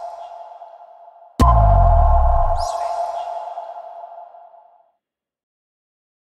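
A TV station's end-card logo sting: an electronic hit with a deep bass boom, a held synth tone and a brief high shimmer. It strikes about a second and a half in, after the fading tail of an identical hit, and dies away over about three seconds.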